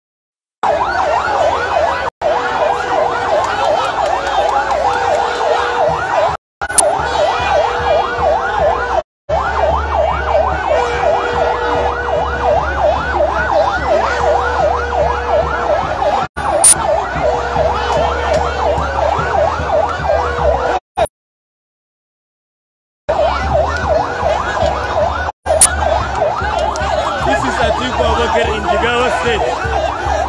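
A large crowd cheering and shouting over a fast, repeating rising-and-falling siren wail, with a held horn-like tone that sounds on and off. The sound cuts out abruptly several times, once for about two seconds past the twenty-second mark.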